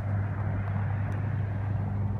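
Outdoor background: a steady low hum over an even haze of noise.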